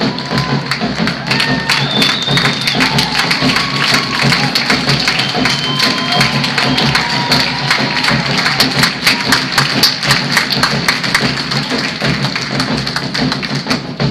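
Marching band playing, with a fast, dense run of sharp percussion strokes throughout and a few held high tones over it.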